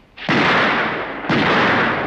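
Two shotgun shots about a second apart, each with a long ringing tail: a Browning Auto-5 semi-automatic shotgun fired twice at a pair of clay targets (doubles).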